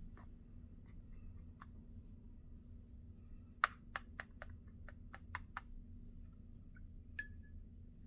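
Faint, sharp clicks of a paintbrush knocking against a plastic paint palette while mixing paint, a quick run of about eight in two seconds near the middle, over a low steady hum.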